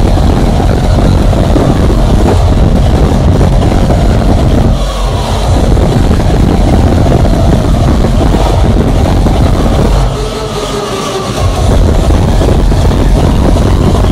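Very loud hardstyle music played over a club sound system, with heavy, dense bass. The bass drops out briefly twice: about five seconds in, and for a second or so around ten seconds in.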